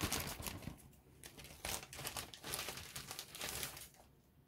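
Clear plastic bag crinkling and rustling as it is handled, in irregular crackly bursts with a short lull about a second in; the rustling stops just before the end.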